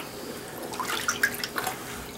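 A deer hide being worked by hand in a bucket of rinse water: small, irregular splashes and drips.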